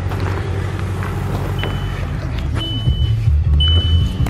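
2006 Volkswagen Passat's 2.0-litre turbo four-cylinder idling steadily. About halfway through, a high dashboard warning chime starts, repeating about once a second with each tone lasting about half a second.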